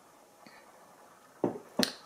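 Quiet room tone, then two short clicks about half a second apart near the end.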